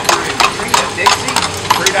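Hooves of the draft animal pulling a street tour carriage clip-clopping on pavement at a steady walk, about three to four hoofbeats a second.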